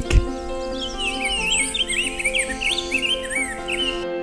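A male rose-breasted grosbeak singing a long, rapid warbled phrase that starts about a second in, over steady background music.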